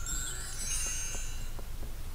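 A short, sparkling chime sound effect, several high tones ringing together that start at once and fade away over about a second and a half, marking a change of slide.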